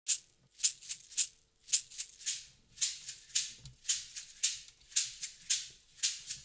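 A percussion shaker playing a steady solo rhythm, about two accented shakes a second with lighter strokes in between, counting in the song before the drums and band enter.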